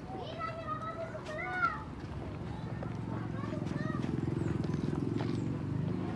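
Voices of people close by, then a low, even rumble like an engine running, which grows louder from about three seconds in.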